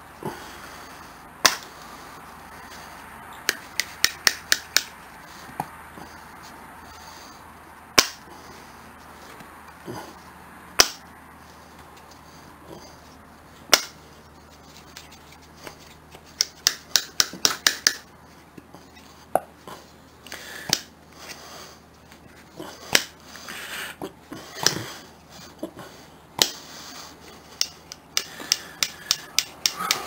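Rusty steel pliers worked open and closed by hand, their jaws clicking shut: sharp metal clicks, some single and some in quick runs of about five a second. The joint, loosened by soaking in WD-40, now moves easily.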